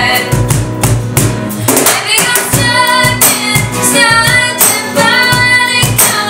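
Live acoustic pop music: a woman singing lead over two strummed steel-string acoustic guitars and a cajon beat.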